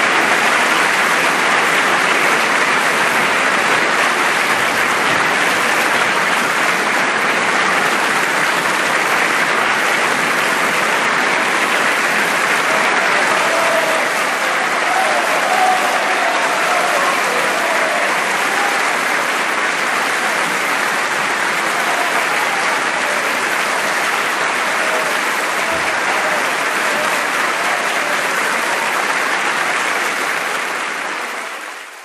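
A theatre audience applauding steadily and loudly, with a few faint voices calling out from the crowd about halfway through.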